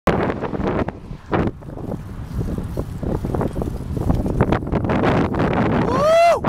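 Wind buffeting the microphone of a camera on a moving bicycle: a loud, steady rush broken by many short knocks and bumps.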